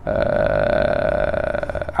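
A man's drawn-out hesitation vowel, a steady 'ehhh' held for about two seconds while he searches for a word.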